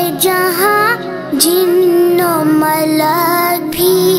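A boy singing an Urdu manqabat solo, sliding through ornamented, held notes with short breaths between phrases, over a low steady hum.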